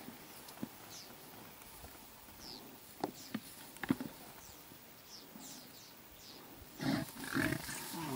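Quiet grassland with faint bird chirps and a few sharp clicks, then, about seven seconds in, a loud, low, rough animal sound as two Cape buffalo bulls charge and clash again.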